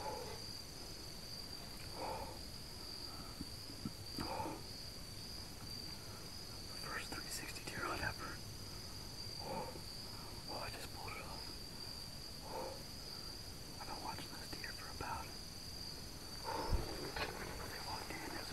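Steady high-pitched insect trill, as of crickets at dusk, with scattered faint short rustling sounds every second or two.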